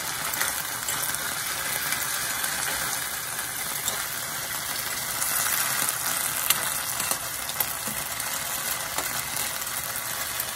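Shrimp and green beans sizzling in a garlic sauce in a frying pan, stirred with a metal spoon that scrapes and clinks against the pan. The sharpest clink comes about six and a half seconds in.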